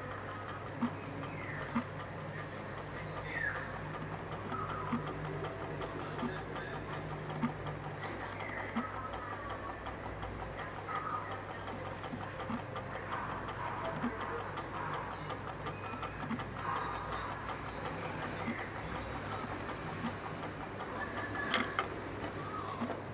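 Homemade pulse motor with a CD rotor and reed switch running, giving a short tick about once a second as each magnet passes the switch and the coil is pulsed. A steady low electrical hum runs underneath.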